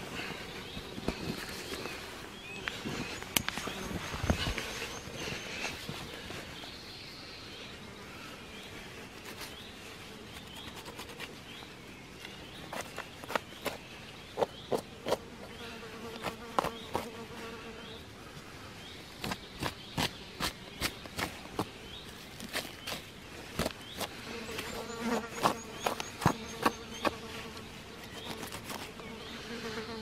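A fly buzzing around a freshly killed deer carcass, the hum coming and going as it flies near and away. Sharp clicks and rustles come from the knife work as the carcass is cut open for gutting.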